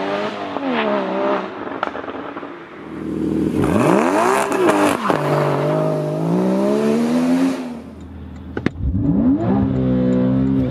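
Porsche Cayman GTS flat-six engine accelerating hard, its revs climbing and dropping back again and again with the gear changes. About eight seconds in it goes briefly quieter, a single click sounds, and then it revs up once more.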